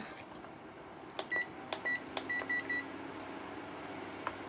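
Induction cooktop control panel beeping as its buttons are pressed: about six short, high beeps in quick succession in the second half. A faint steady hum and a few light clicks of a utensil in the pot run underneath.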